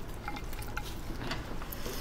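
Plastic-gloved hands squeezing and pulling apart sauce-coated braised meat in a bowl: a steady run of small, wet, sticky crackles.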